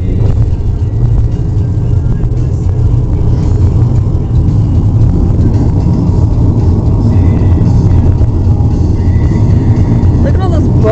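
Steady low rumble of a moving car's tyres and engine, heard from inside the cabin.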